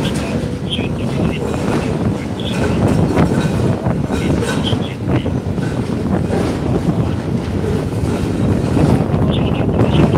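Demolition excavator working at a building demolition site: a loud, continuous heavy rumble with short higher sounds scattered through it, mixed with wind buffeting the microphone.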